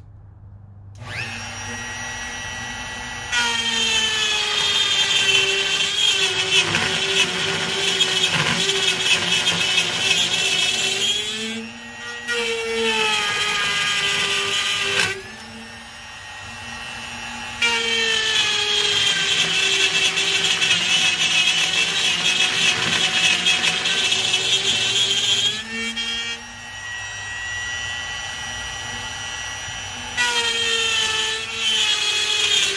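Handheld electric router cutting the edge of a quarter-inch clear acrylic panel. The motor spins up with a rising whine about a second in. It then runs in three long, loud, rough stretches while the bit is in the cut, dropping to a smoother, quieter whine in between and near the end as the bit runs free.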